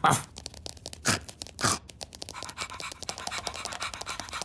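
Cartoon sound effects of a pet ladybird snatching a slipper and scurrying off with it: a continuous quick, scratchy scuffling patter, with three short, louder swishes in the first two seconds.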